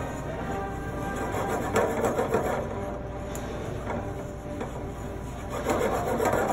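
Chopsticks stirring eggs in a hot skillet, clicking and scraping against the pan, over steady background music.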